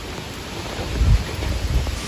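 Steady outdoor hiss with a low rumble about a second in.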